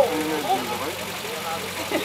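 Suzuki Santana 4x4's engine idling with a low steady hum, under the background chatter of onlookers' voices.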